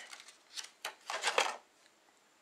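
Clear plastic lure packaging crinkling in a few short rustles as a soft-bodied popping frog lure is pulled out of it.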